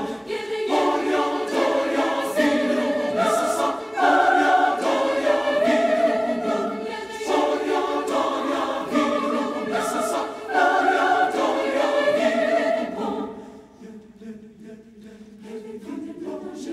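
Mixed choir singing a Czech folk song in choral arrangement, in strong rhythmic phrases that fall to a soft passage about thirteen seconds in.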